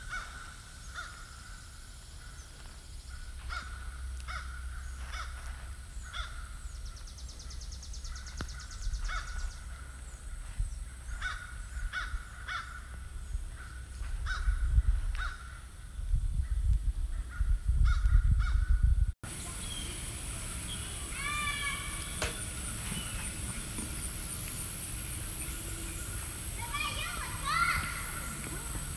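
Outdoor ambience with repeated short bird calls scattered through the first two-thirds, over a low rumble on the microphone that grows loudest just before a sudden cut. After the cut, a steady high drone runs under a few quick chirping calls.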